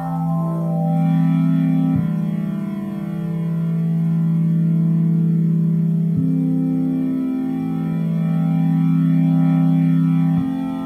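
Synthesis Technology E370 quad morphing wavetable oscillator playing sustained four-voice chords. The chord changes about two seconds in and again about six seconds in. The tone shifts slowly as a wave parameter knob is turned.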